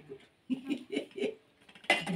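A woman laughing softly in a few short breathy pulses, then a sharp click just before the end.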